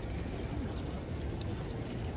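Hooves of a thoroughbred racehorse clopping as it is led at a walk, over a steady low background of the surrounding crowd, with a few short sharp clicks.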